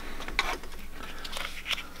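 Light rustling and a few irregular small clicks as test fabric is handled at the needle and presser foot of an industrial sewing machine that is not stitching, over a faint steady low hum.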